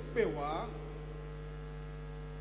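Steady electrical mains hum in the microphone and sound system: an even low buzz with a steady higher tone above it.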